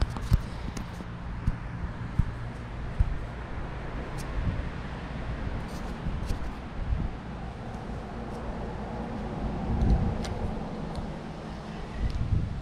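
A low rumble with scattered sharp clicks and knocks, several in the first three seconds: handling noise from a hand working a spinning rod and reel right at the microphone.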